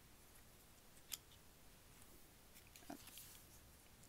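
Near silence, broken by faint handling of a stack of photocards: one sharp click about a second in and a softer tap near three seconds.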